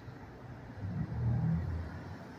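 Police SUV engine rumbling low as the vehicle creeps and turns slowly across a parking lot, swelling briefly about a second in as it is given a little throttle.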